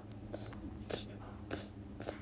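A person's short, breathy gasps, about one every half second, over a faint steady low hum.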